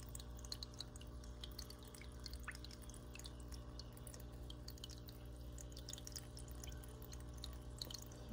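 Aquarium water dripping and trickling in quick, irregular small drips, over a steady low hum.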